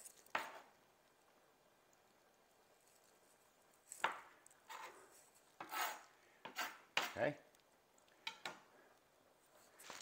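Chef's knife halving cherry tomatoes on a cutting board: one cut just after the start, a pause, then a run of about seven short, separate cuts onto the board.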